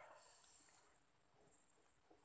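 Near silence: a faint hiss fades out within the first second.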